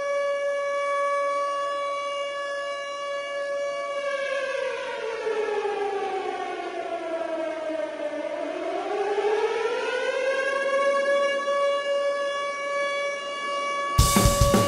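A siren-like wail in the soundtrack music holds one steady pitch, sags lower from about four seconds in to a low point near eight seconds, then climbs back to its first pitch and holds.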